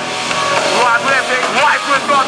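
Live heavy band playing loudly: distorted electric guitars and drums with a vocalist on the microphone over them.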